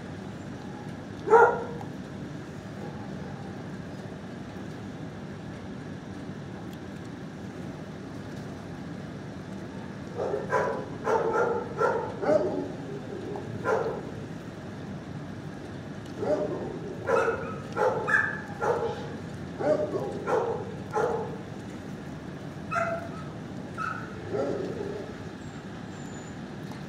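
Dogs barking in short bursts in a shelter kennel: one loud bark about a second in, then runs of barks from about ten seconds in and again in the second half, over a steady low hum.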